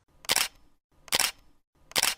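Camera shutter clicks, three in a row, evenly spaced a little under a second apart.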